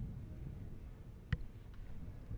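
Pool balls clicking together once, a sharp click about a second and a half in, over a low hum of the hall.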